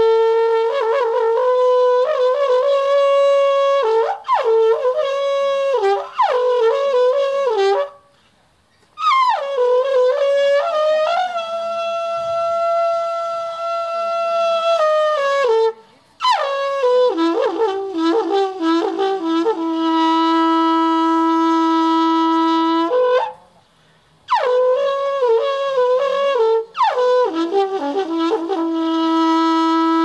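Trâmbița, the Romanian Carpathian alphorn, playing a shepherd's signal for gathering the sheep for milking. Quick phrases of leaping horn notes alternate with long held tones, broken by three short pauses for breath, at about 8, 16 and 24 seconds.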